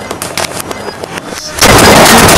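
Dry macaroni pasta pieces clattering onto a tiled tabletop in a rapid run of small clicks. About one and a half seconds in, a sudden very loud noise cuts in.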